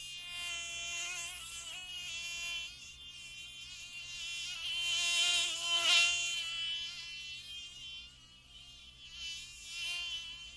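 A flying insect buzzing with a thin, wavering drone. It grows louder toward the middle, fades, and comes back briefly near the end.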